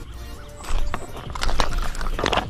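A freshly landed snakehead flopping on a gravel path, making a few irregular thuds and scrapes, with music underneath.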